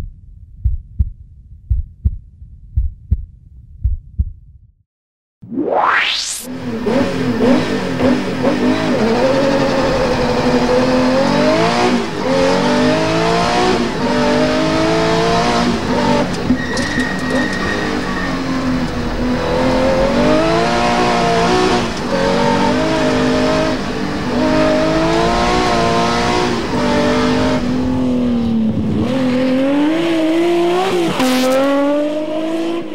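For the first few seconds, a heartbeat-like low thumping, then a quick rising sweep. After that, a Porsche 911 rally car's air-cooled flat-six revs hard and keeps rising and falling in pitch as it climbs through the gears and backs off for corners, with the engine close up as if heard on board.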